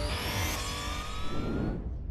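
Short electronic title jingle: deep bass under several slow rising sweep tones, cutting off suddenly near the end.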